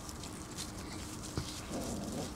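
Shiba Inu puppies' paws scuffling and pattering on dry, leaf-strewn dirt as they tussle over a cloth, with a single short knock about two-thirds of the way through.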